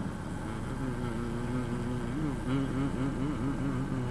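Steady low rumble of a car cabin while the car waits in traffic. Over it, a low voice sings a slow tune in long held notes that waver and bend about halfway through.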